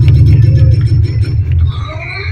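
Loud low bass rumble from an outdoor festival sound system, with faint music above it.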